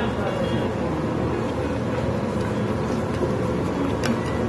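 Steady background rumble of a busy commercial kitchen, with indistinct voices mixed in.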